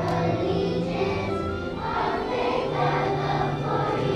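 Children's choir singing in unison, with sustained low notes from an instrumental accompaniment underneath.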